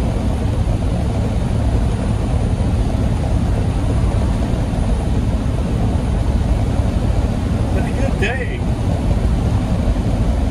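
Steady low drone of a semi truck's engine and tyres, heard inside the cab while driving on the highway. About eight seconds in, a brief high-pitched sound cuts through for half a second.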